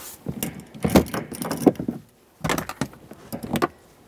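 A 19 mm metal wrench clicking and clinking on the rear shock absorber's upper mounting nut as it is tightened, in two runs of quick strokes with a short pause between.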